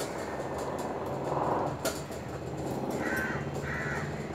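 A bird calling three times in short calls, once about a second in and twice near the end, over a faint steady low hum.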